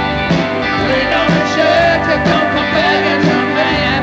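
Live rock band playing: electric guitars over a drum kit, with a wavering lead line on top.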